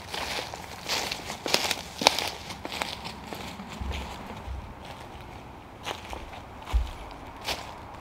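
Footsteps walking through dry fallen leaves: an irregular series of rustling steps, the sharpest about two seconds in.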